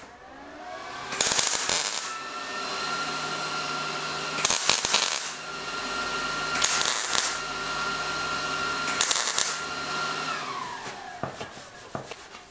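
MIG welder (Millermatic 211) laying four short tack welds on thin sheet steel, each arc crackling for about half a second to a second. Under the tacks, a steady machine hum builds at the start and winds down near the end.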